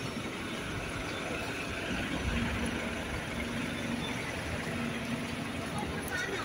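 Double-decker bus engine running close by: a steady low rumble with a steady hum that comes up about two seconds in, over general street noise.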